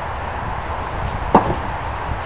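One sharp knock a little past halfway, with a fainter knock just after it, from work on a yew log being split, over a steady background hiss.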